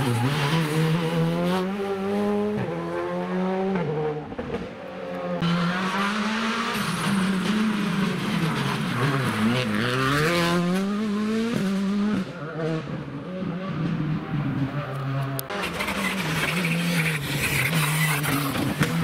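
Rally car engines running hard through a tight bend, the pitch repeatedly rising under acceleration and dropping on each gear change and lift-off.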